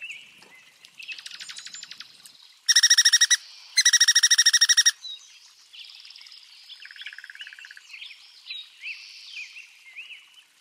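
Small songbirds chirping and calling, with a fast trill about a second in. Two loud, harsh, rapid trills come about three and four seconds in and are the loudest sounds, and a lower, softer trill follows near the end.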